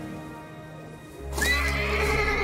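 A horse lets out a sudden, loud, high whinny a little past halfway through, over dramatic music, as it rears at a man.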